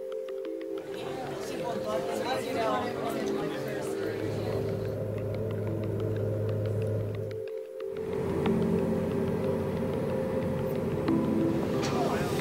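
Background music over the cabin noise of a small high-wing propeller plane landing and taxiing, with indistinct voices; the sound dips briefly about halfway through.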